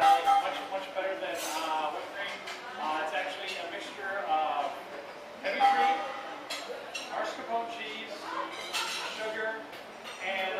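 Mostly voices talking in a room, with a few light clinks of glassware and tableware.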